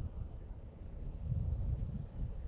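Wind buffeting an outdoor camera microphone: an uneven low rumble.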